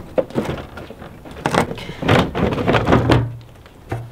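Plastic front bumper cover of a Subaru STI being fitted back onto the car: a series of irregular knocks, taps and rustles as it is handled and pushed into place against the fender.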